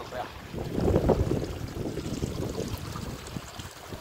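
Wind buffeting the microphone in gusts: an uneven low rumble, strongest about a second in.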